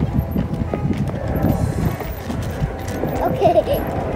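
Footsteps knocking on the decking of a floating marina dock as someone walks along it, with background music underneath.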